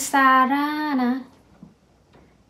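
Speech only: a woman saying a short phrase, drawn out in a level, sing-song tone for about a second.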